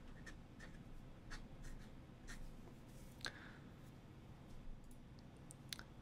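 Faint scratching and light ticks of a fountain pen writing a short number on paper and drawing a box around it, with one sharper tick a little past the middle.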